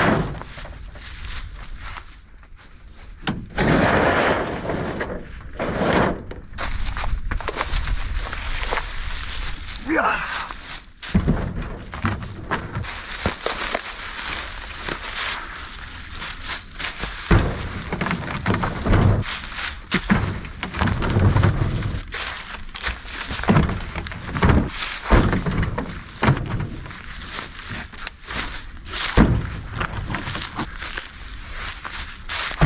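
Heavy red oak rounds being heaved into a pickup truck bed, landing with repeated dull thuds and knocks, between stretches of footsteps and rustling in dry leaves.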